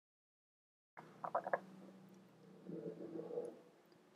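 The sound cuts in abruptly about a second in with four quick light clicks of plastic miniature game pieces being handled on the tabletop. They are followed by a brief low murmur, all over a faint steady hum.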